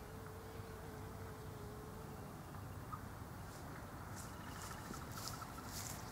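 Quiet outdoor background with a faint steady hum that stops about two seconds in. Light scattered crackles follow in the last couple of seconds.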